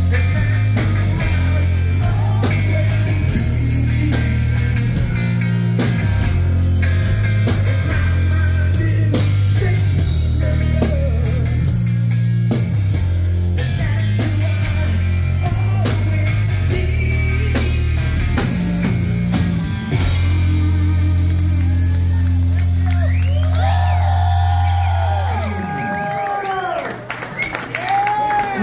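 Live heavy rock band playing at full volume through a PA: distorted guitars, bass, steady pounding drums and vocals. About 20 s in, the drums stop and the band holds a final chord that cuts off about two seconds before the end. The crowd then cheers and shouts.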